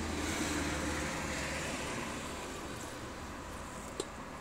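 Street background noise with a low traffic rumble that fades after about a second, and one short click at the very end.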